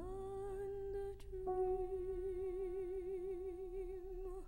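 A soprano's voice slides up into one long held note, plain at first, then with vibrato from about a second and a half in.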